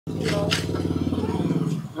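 An engine running steadily, fading away near the end.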